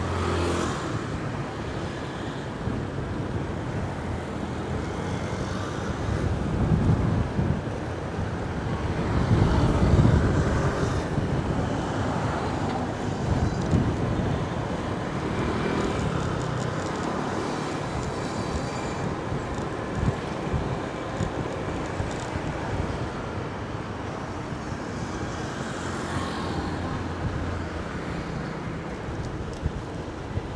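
Street traffic noise heard from a moving vehicle, with low rumbling swells that rise and fall a few times, loudest about ten seconds in, and a single sharp click about two-thirds of the way through.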